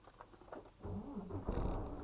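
Diesel engine of a semi-truck cranking and catching about a second in, growing suddenly louder and then running steadily.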